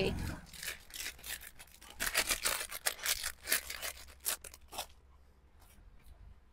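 Garments and their plastic packaging being handled, rustling and crinkling in irregular crackles that are busiest in the middle seconds.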